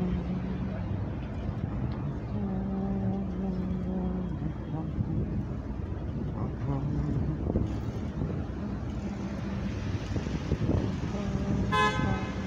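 Vehicle horn sounding several times over city street traffic. The horn gives low, held tones, the longest about two seconds, and a short brighter honk near the end.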